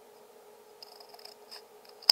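Scissors cutting through a ring of cardboard toilet paper tube, a few faint crisp snips, over a faint steady hum.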